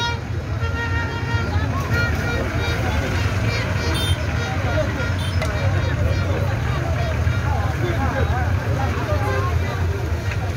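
Toyota Coaster minibus engine running as the bus moves slowly past, a steady low rumble, with a crowd of people talking and calling out around it.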